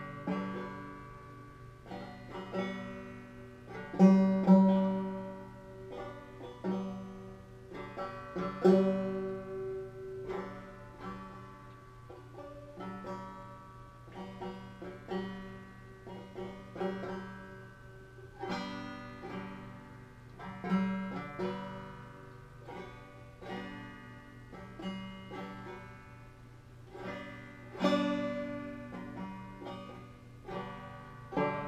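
Resonator banjo played solo: plucked notes and chords that ring and die away in a running rhythm, with several louder strummed accents along the way.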